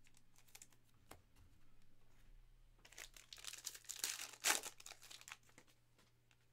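A trading-card pack wrapper being torn open and crinkled by hand: a run of crackling rips about three seconds in, loudest at about four and a half seconds, after a few faint clicks and rustles of cards being handled.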